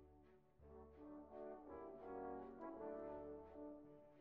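Faint background music: a slow melody of sustained notes, with a brass-like sound.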